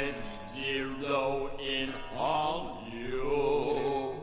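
Post-punk song: a male voice chants long, wavering held notes in phrases about a second long over a steady low note.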